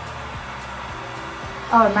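Heat gun running on its highest heat and high fan setting while warming up: a steady rush of blown air with a low motor hum.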